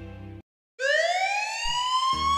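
The closing music of a short film ends, and after a brief silence a sound-effect tone glides steeply upward and then holds a steady pitch, like a siren winding up, opening the next segment.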